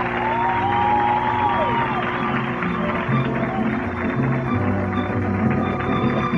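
Mariachi band playing, led by violins with sliding notes, and deep bass notes coming in about two and a half seconds in.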